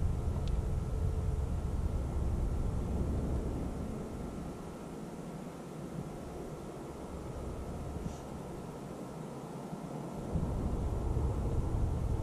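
Low, gusty rumble of wind buffeting the camera microphone. It drops away for several seconds in the middle and comes back suddenly about ten seconds in.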